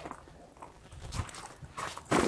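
Several soft knocks and bumps, spaced irregularly.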